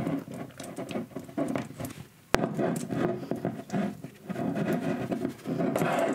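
Close handling noise of fingers twisting thin craft wire around the neck of a glass bottle: a run of small, irregular scratches and rustles. A single sharp click a little past two seconds in follows a brief near-silent gap.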